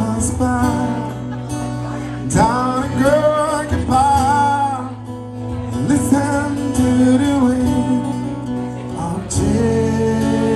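Live acoustic music: a man singing to a strummed acoustic guitar, in sung phrases with short gaps between them.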